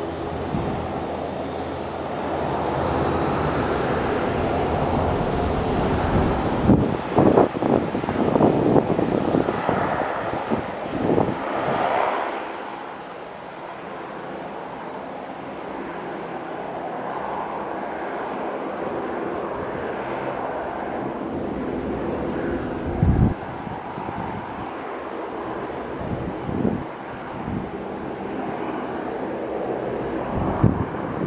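Jet engines of a Boeing 737-800 (CFM56 turbofans) running at high power as the airliner rolls away down the runway for takeoff, a steady rumble that drops somewhat after about twelve seconds. Irregular gusts of wind buffet the microphone, loudest near the middle and again about three quarters of the way through.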